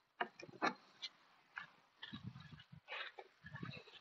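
Faint, irregular snuffling of an Aussiedoodle sniffing about, with a few light scuffs and ticks.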